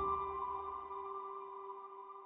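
Slow, soft piano music: a chord struck right at the start rings on and slowly fades.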